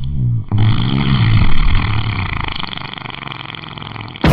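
A low, rough rumbling sound effect with a steady hiss above it, swelling to its loudest about a second and a half in and then fading.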